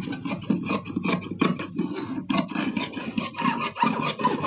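Large tailor's shears cutting through cloth on a table: a quick, steady run of snips and rasping blade strokes, with two brief high squeaks.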